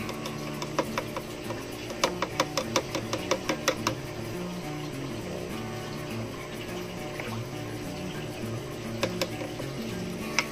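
Background music, with a quick run of about ten light taps starting about two seconds in and two more near the end: a plastic bottle cap tapped against the glass edge of an aquarium to shake fish pellets into the water.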